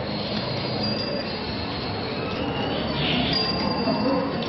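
Busy street noise, a steady wash of traffic and crowd sound, with a thin high squeal in the second half.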